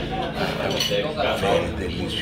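Café ambience: dishes and cutlery clinking, with voices chattering in the background.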